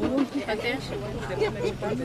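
Crowd chatter: several people talking at once close by, with a low steady hum underneath.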